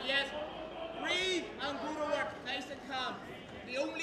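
Men's voices shouting and calling out across a large hall, distinct from the close commentary.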